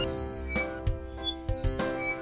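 Children's background music with a steady beat. Two short, high squeaky notes sound about a quarter second in and again near the end, and they are the loudest moments.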